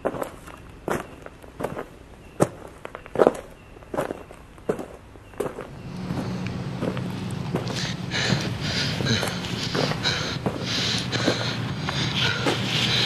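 Footsteps on hard ground: single sharp steps about two thirds of a second apart for the first five seconds or so. About halfway through, a louder steady low hum with a pulsing hiss comes in and carries on to the end.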